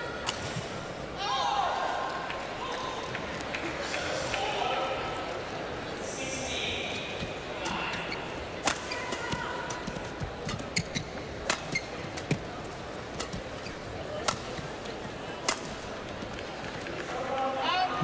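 Badminton rally: racket strings striking a feather shuttlecock in a series of sharp cracks, about one a second, over a murmur of arena voices.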